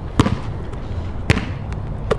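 A basketball bouncing twice on a wet outdoor court, two sharp smacks about a second apart.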